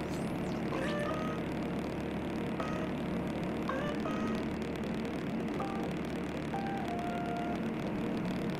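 Rotax 912 engine and propeller of an Aquila A210 light aircraft running steadily during the takeoff roll, heard from inside the cockpit. A few short tones at different pitches sound over it now and then.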